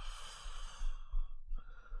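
A man sighing heavily into a close microphone: one long breathy exhale, then a shorter breath about a second and a half in.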